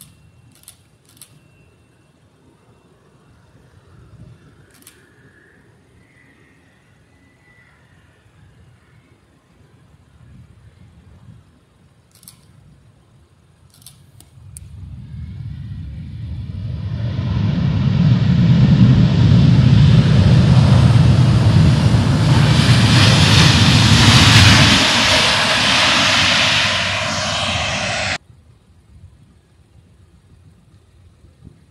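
Jet engines of a widebody twin airliner, the Lufthansa Airbus A350-900, on the runway: the noise builds over several seconds into a loud, deep rumble with a hissing whine above it, holds, then cuts off suddenly near the end.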